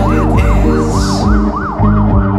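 Instrumental passage of a home-recorded song: sustained low bass notes and chords, with a high wavering tone sliding up and down about three to four times a second.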